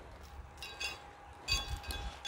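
Light metallic clinks and jingles, a few of them in two short clusters with the second louder and carrying a low thud, as a weight and belt are handled and fastened together.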